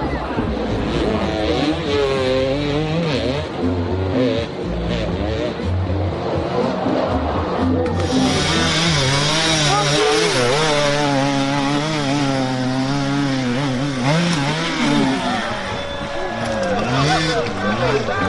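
Dirt bike engines revving hard on a steep climb, the pitch surging up and down with the throttle, with spectators shouting. The sound changes abruptly about eight seconds in and turns brighter and busier.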